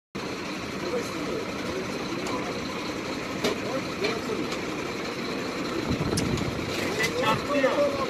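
A vehicle engine idling steadily under indistinct voices, with a few light clicks.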